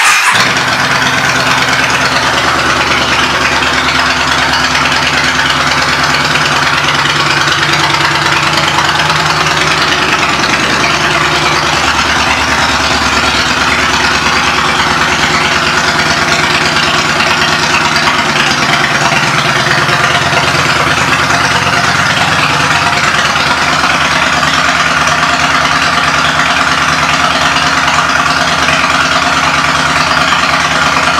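Yamaha V Star 950's air-cooled V-twin engine idling steadily through aftermarket Freedom pipes, loud and close to the microphone.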